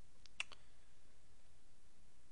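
Two or three quick clicks in the first half second, typical of a computer mouse button, followed by faint steady background noise.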